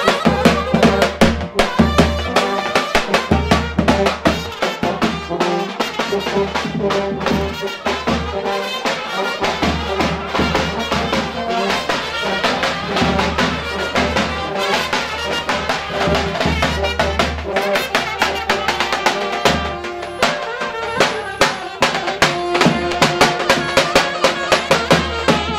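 Live brass band dance music: trumpet and saxophone over a large double-headed bass drum beaten with a stick, keeping a steady driving beat.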